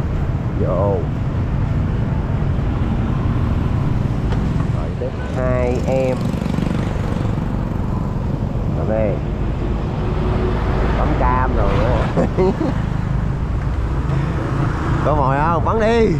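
Steady low rumble of street traffic and motorbike engines, with short snatches of voices every few seconds.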